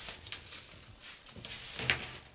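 Heavily starched, stiff lace rustling and crinkling faintly as it is handled, with a few soft crackles and one sharper crackle near the end.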